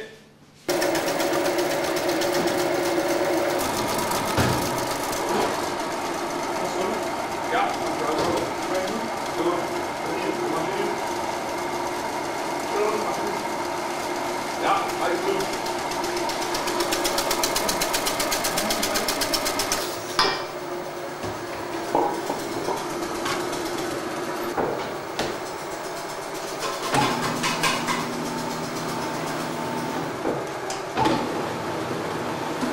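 Electric bakery machinery running with a steady hum and a fine, rapid mechanical rattle, switching on abruptly about a second in. The sound shifts around twenty seconds and takes on a lower hum near the end.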